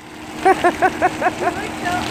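A woman laughing in a quick run of about seven short "ha" syllables, over a steady low hum.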